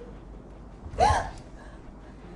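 A person's short, sharp gasp about a second in, its pitch briefly rising and falling.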